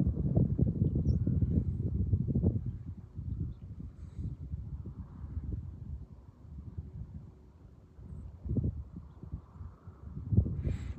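Wind buffeting the phone's microphone: a low, uneven rumble that is strongest for the first two and a half seconds, then eases, with another gust near the end.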